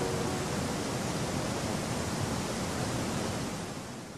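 The last notes of the closing music die away just after the start, leaving a steady rushing noise like running water or surf, which begins to fade out near the end.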